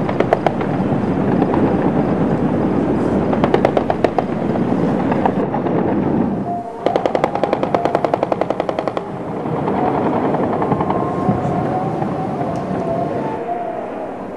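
Bursts of automatic gunfire, rapid sharp cracks several a second, over steady background noise. The longest and densest burst comes just past the middle.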